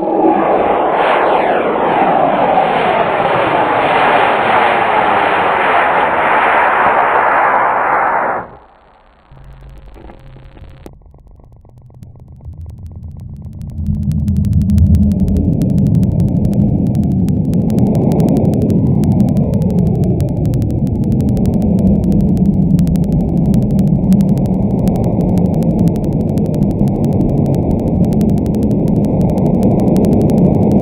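Estes C6-5 black-powder model rocket motor firing at liftoff: a loud rushing hiss starts at once and falls away sharply about eight seconds in. After a quieter stretch, a deeper, muffled rumble of the burn takes over from about halfway through.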